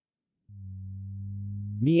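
A synthesized male voice holds a steady, low, drawn-out "mmm" hum, starting about half a second in. The hum runs straight into the spoken word "Miang" near the end.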